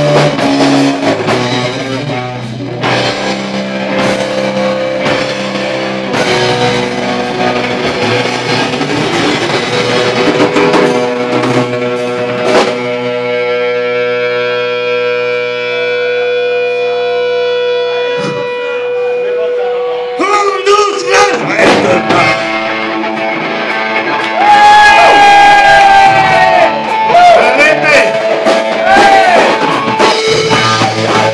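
Live rock band playing electric guitar and drum kit. About halfway through the drums drop out and a chord is held for several seconds, then the full band comes back in louder near the end.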